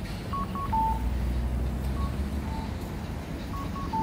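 Electronic beeping in a repeating pattern of two quick higher beeps followed by a longer, slightly lower beep, about every one and a half seconds, over a low street rumble.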